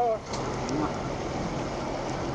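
A vehicle engine idling: a steady low hum under an even background noise.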